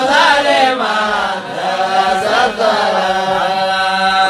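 A voice chanting a religious chant in long, drawn-out phrases, its pitch wavering and bending through each held note, with brief breaks between phrases.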